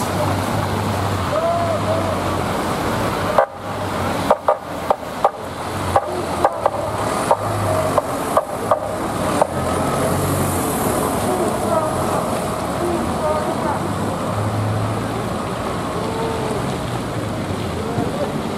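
Busy street traffic with a bus pulling away, car horns and distant voices. Between about four and nine and a half seconds in comes a run of about a dozen sharp knocks.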